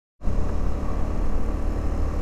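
Motorcycle being ridden along at a steady road speed: the engine running with a steady low rumble of wind and road noise over it.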